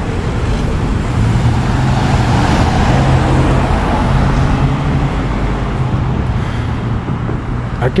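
Road traffic: a motor vehicle's engine drone and tyre noise, swelling slightly as it passes about a third of the way in.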